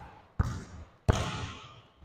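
Two basketball bounces on a gym floor, about 0.7 s apart, each ringing out in the hall's echo.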